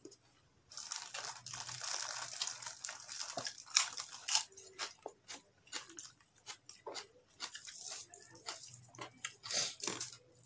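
A person eating raw beef close to the microphone: wet chewing and mouth smacks, with a longer hissing stretch from about one to three and a half seconds in, then a run of short sharp clicks.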